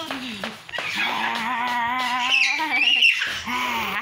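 A toddler's wordless vocalizing: one long drawn-out sound held on a steady pitch, then a shorter one near the end.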